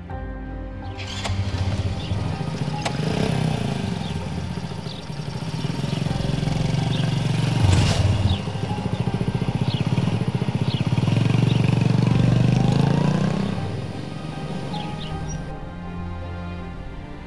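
Small step-through motorbike engine starting about a second in, then running and revving up and down, with its pitch rising near the end as it pulls away, over background music.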